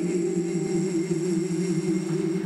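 A female singer, live on stage with a jazz band, holding one long low note with a gentle vibrato.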